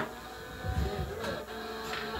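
Microphone handling noise: a sharp click as a handheld microphone is taken up, then a few low thuds and rustles as it is handled. Faint held instrument notes sound underneath.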